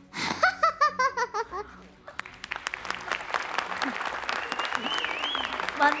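A child's laugh, a quick run of about half a dozen notes falling in pitch, then, from about two seconds in, a studio audience clapping and cheering, with a long high note rising over the applause near the middle.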